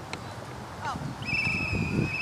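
Referee's whistle blown in one long, steady blast starting a little past halfway and still going at the end.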